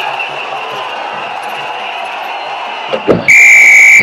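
Steady crowd noise from arena stands, then a referee's whistle blows one loud, steady, shrill blast near the end.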